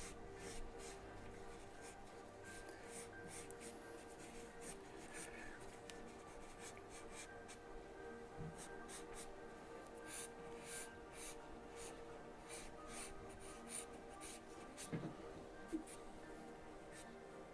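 Charcoal pencil scratching across newsprint in many quick, short strokes as a figure drawing is worked up, over quiet background music. Two soft knocks near the end.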